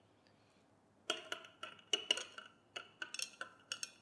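Thin metal stirring rod clinking against the inside of a glass beaker of water as it is stirred. A quick, irregular run of light ringing taps starts about a second in.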